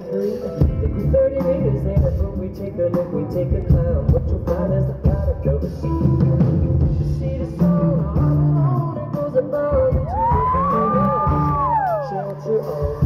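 Live pop band playing with a steady drum beat. About ten seconds in, a long high note rises, holds, then falls away near the end.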